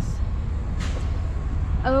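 Semi truck's diesel engine idling with a steady low rumble while the air system builds pressure back up, with a brief hiss a little under a second in.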